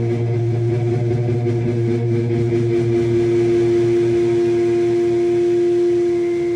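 Electric guitar through an amplifier holding one sustained note or chord, with no drums, one steady tone swelling louder as it rings on.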